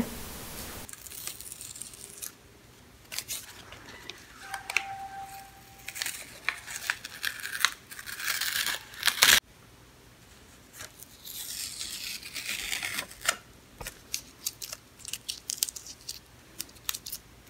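Masking tape being peeled off the edge of a painted canvas in several separate pulls: short rasping rips with pauses between them, and a sharp click about nine seconds in.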